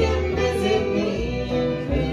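A live acoustic string band playing a folk song together: banjo, fiddle, upright bass and acoustic guitar, with steady bass notes under the plucked strings.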